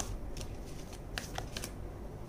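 Oracle cards being handled as a card is drawn from the deck: a few light papery clicks and flicks of card stock, a pair near the start and a small cluster in the second half.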